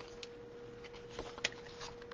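Cardstock being handled and pressed by hand on a cutting mat: a few light scattered taps and rustles, the sharpest about one and a half seconds in, over a steady faint hum.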